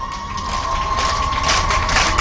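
Public-address microphone feedback: a steady ringing tone held at one pitch while the speaker pauses, over a low hum and scattered crackle.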